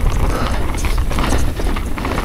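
Mountain bike coasting fast down a dirt singletrack, its rear freehub ratcheting in a dense run of clicks, over the steady rumble of tyres and bike on rough ground.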